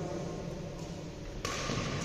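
Badminton rally: rackets hitting the shuttlecock and players' footwork on the court, over a steady hum, with a sudden hissing noise for about half a second near the end.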